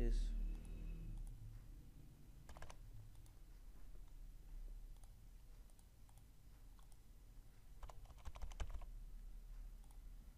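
Computer mouse and keyboard clicks: a single click about two and a half seconds in, then a quick run of several clicks around eight seconds in, over a low steady hum.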